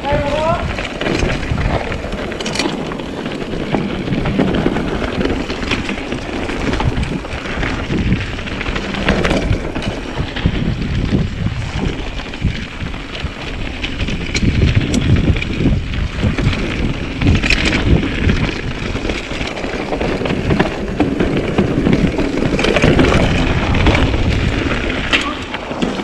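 Mountain bike riding down a dirt singletrack: tyre rumble and rattling of the bike over the rough trail, with wind buffeting the microphone.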